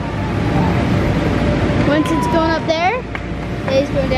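Steady rumble of the inflatable bounce house's air blowers, with children's high voices calling and squealing over it, most clearly about two to three seconds in.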